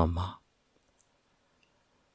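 A narrator's voice trails off about a third of a second in, followed by near silence with one faint click about a second in.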